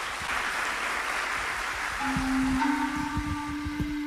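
Studio audience applause fading, then about halfway through a live band starts a song: a long held note comes in over a run of low thumps.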